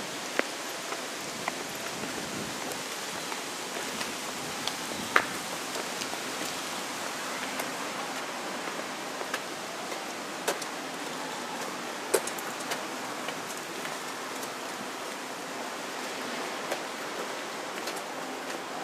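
Outdoor street ambience: a steady hiss with scattered sharp clicks and taps at irregular moments.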